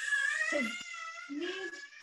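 A toddler's long, high-pitched squeal, held on one slightly wavering note, with a few brief low voice sounds under it.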